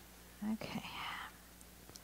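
A woman's brief murmur trailing into a whisper under her breath, about half a second long, starting about half a second in.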